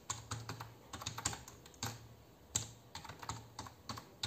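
Typing on a computer keyboard: a fairly faint, uneven run of keystroke clicks with short pauses, as an email address is typed in.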